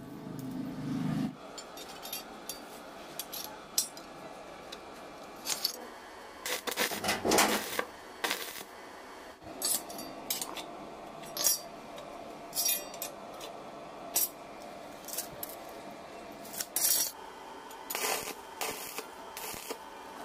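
Steel angle-iron frame and a steel try square clinking and scraping as they are shifted and squared up on a concrete floor, with scattered sharp taps. Near the end, short crackling bursts of arc welding as a corner is tacked.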